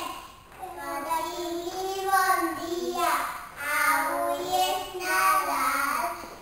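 A group of young children singing together in phrases, with short breaks between them.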